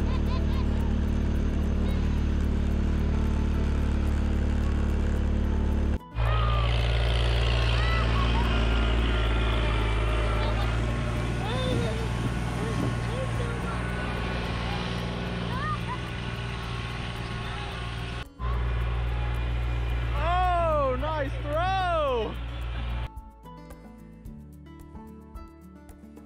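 A vehicle engine running steadily as it tows a sled over snow, with children's voices squealing over it near the end. The engine sound breaks off twice at cuts and stops a few seconds before the end, leaving quieter music.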